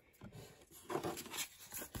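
Soft rustling and scraping of a paper certificate card and the cardboard box as they are handled, swelling about a second in, with a short click near the end.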